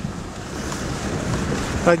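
An off-road 4x4 driving over a snowy track, heard from inside the cab: a steady rumble of engine and tyres that grows gradually louder as it pulls away.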